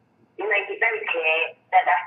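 Speech from a recorded telephone call, heard through the narrow sound of a phone line, starting about half a second in after a brief pause.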